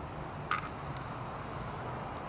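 Quiet outdoor background of steady low hum and hiss, with one short sharp chirp-like click about half a second in.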